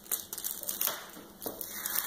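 Light rustling and crinkling from handling a glue-covered fabric strip and the sheet beneath it, with a few soft taps.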